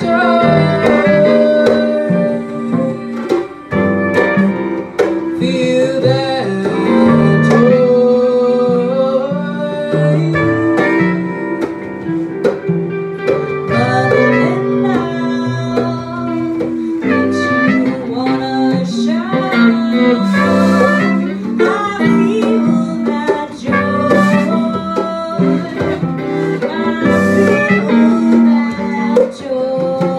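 A small live band playing: a woman singing into a microphone over guitars, with a trumpet joining in.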